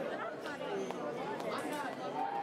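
Indistinct chatter of many overlapping voices in a large sports hall.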